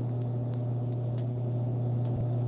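Steady low hum of a refrigerated drink vending machine running, with a couple of faint clicks as its keypad buttons are pressed.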